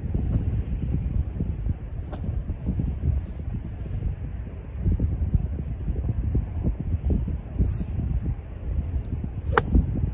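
Wind buffeting the microphone, then near the end a single sharp crack as a golf iron strikes the ball and turf.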